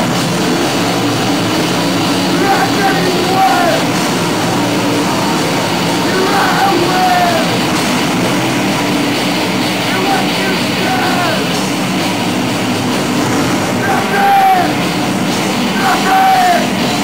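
Live rock band playing loud, distorted noise-rock with electric guitar, bass and drums. A short bending high note recurs about every three and a half seconds.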